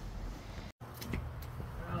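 Faint outdoor background noise with an uneven low rumble, broken by a moment of complete silence at an edit just before one second in. A woman's voice starts near the end.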